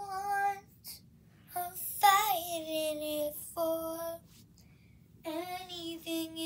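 A high solo voice singing unaccompanied, in several short phrases with brief silent pauses between them.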